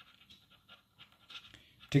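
Near silence: room tone with a few faint, short soft sounds, then a man says "Okay" at the very end.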